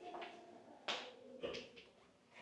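Faint, indistinct voices in the background, coming and going in short stretches.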